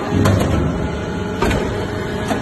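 TCM hydraulic metal-chip briquetting press running, a steady machine noise from its hydraulics and ram. A few sharp clicks or knocks come through it, two near the start and one about a second and a half in.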